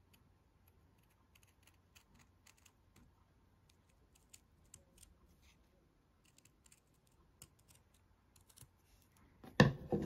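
Scissors snipping white craft felt: a string of faint, irregular short snips, then one louder knock near the end.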